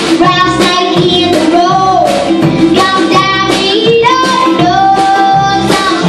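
Live band performance: a young girl singing lead, holding long notes with vibrato, over upright bass, guitar and drums.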